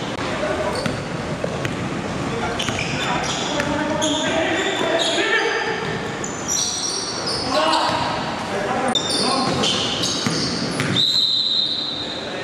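Basketball game in a large echoing gym: the ball bouncing on the hardwood floor amid players' shouts and calls. Near the end a referee's whistle blows once, a steady high tone of about a second.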